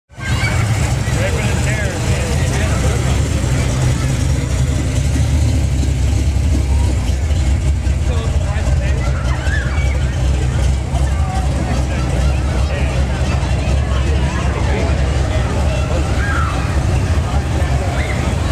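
Low, steady engine rumble from cars cruising slowly past, with people chattering over it.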